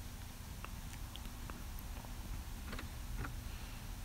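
Faint steady low hum of the car's 3.0-litre supercharged V6 idling, heard from inside the cabin, with a few faint light clicks.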